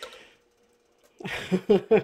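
A quiet moment, then about a second in a woman's short burst of laughter: a breathy onset followed by a few quick voiced pulses.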